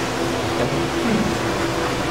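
A steady low hum with room noise, and a brief low voice sound about a second in.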